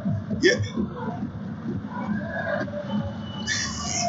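Men's voices in a studio: a short spoken "yeah" near the start, then low, indistinct talk, with a brief hiss near the end.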